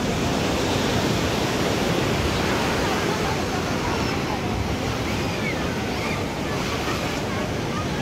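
Crowd chatter from many people under a steady rushing noise.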